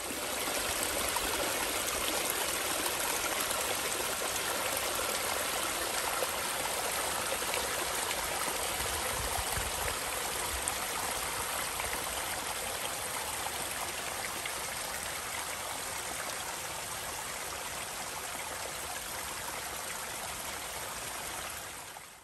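Small mountain stream pouring and splashing over mossy rocks in a steady rush of water.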